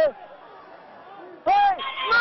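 A person shouting a short, loud, high-pitched call about one and a half seconds in, running straight into a second shout at the end, over a faint steady outdoor background.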